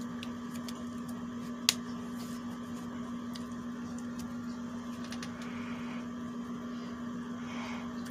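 A steady low electrical hum in a small room, with one sharp click about two seconds in and a few faint ticks.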